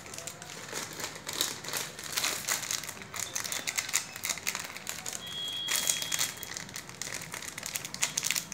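Crinkly plastic wrappers of small Cadbury Gems candy packets being handled and pulled open by hand: a dense, irregular run of crackles, louder for a moment about six seconds in.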